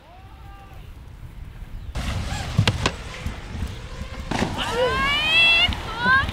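Wind and water noise starting about two seconds in, with a sharp clack a little later as a wakeboard hits a kicker ramp. Near the end a person lets out a long, rising "ooh" of excitement.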